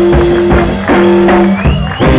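Blues band playing a slow blues live: harmonica over electric guitars, bass and drums, holding long notes, with a short rising bent note near the end.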